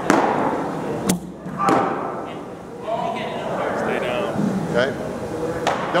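Sharp knocks echoing in a large indoor hall: one at the start, two more a little after a second in, and another near the end, with faint distant voices in between.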